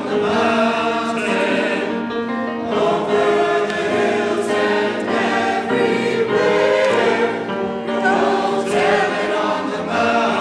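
Church choir singing in parts, with long held notes.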